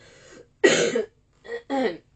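A woman coughing several times, the loudest cough a little over half a second in, followed by two shorter coughs near the end.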